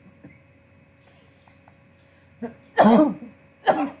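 A man coughing, three harsh coughs in quick succession starting about two and a half seconds in, the middle one the loudest.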